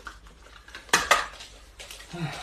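Packing tape being pulled and torn off a handheld tape dispenser: two short, sharp rasping snaps about a second in, then a lighter knock near the end.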